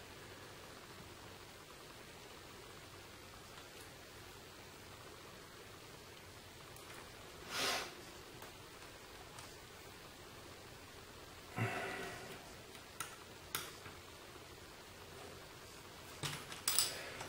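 Quiet room tone with faint handling noise as a Torx screw is turned by hand into an AR-15 lower receiver: a brief soft rush about halfway, a rustle a few seconds later, then two small clicks.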